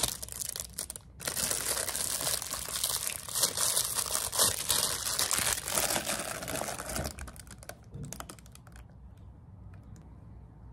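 Clear plastic bag crinkling and rustling as a cup is pulled out of it, a dense crackle of small clicks that is loudest from about a second in until about seven seconds in, then dies away.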